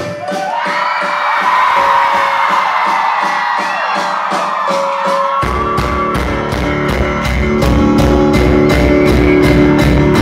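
Live rock band heard through a phone's microphone from the audience: the bass and kick drum drop out, leaving guitar and a steady cymbal tick, then the full band with drums and bass comes back in about five seconds in.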